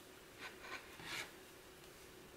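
Wooden knitting needles and wool yarn rubbing and scraping together as stitches are knitted: three short, faint scrapes close together in the first half, the last one the loudest.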